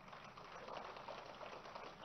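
Faint applause from an audience: a steady crackle of many hands clapping.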